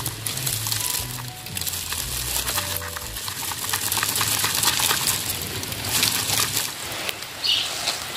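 Background music with a low bass line that stops about three seconds in. Under it, the steady crackle and rustle of dry fibrous potting medium as a ground orchid is worked loose from a clay pot.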